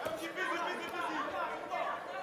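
Crowd of spectators at a boxing match: many voices talking over one another at once, with no single voice standing out.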